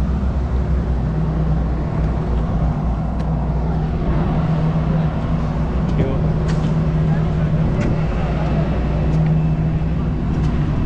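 Steady low mechanical drone of engines or ground equipment on an airport apron beside a parked turboprop airliner, growing a little stronger after about a second, with wind rumbling on the microphone.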